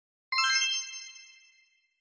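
A bright chime sound effect for an animated end card: one ringing ding made of several high bell-like tones, struck about a third of a second in and fading out over about a second and a half.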